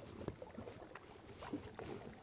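Kayak paddle strokes on calm water: faint, irregular splashes and drips with small knocks close to the hull.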